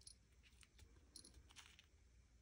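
Near silence, with a few faint light clicks of plastic beads on an album's beaded dangles being handled.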